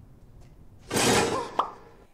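A sudden loud burst of noise about a second in, lasting about half a second and fading, with a sharp click just after: a horror-film jumpscare sting.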